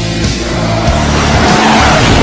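Heavy rock intro music with a rush of noise swelling up over it, loudest near the end.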